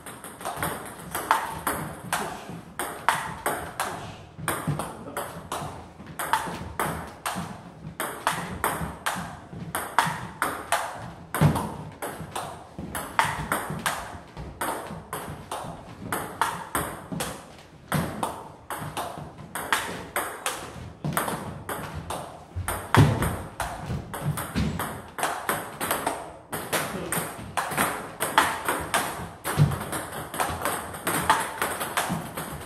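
Table tennis rally: the celluloid-type plastic ball clicks off rubber-faced bats and bounces on the table in a steady back-and-forth of several sharp strikes a second. Attacking hits meet chopped defensive returns from a bat faced with Yasaka Rakza XX rubber, with a few louder hits along the way.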